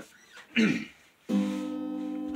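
A throat clear, then about 1.3 s in a chord strummed on a steel-string acoustic guitar rings out and sustains.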